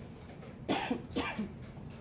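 A person coughing twice, about half a second apart.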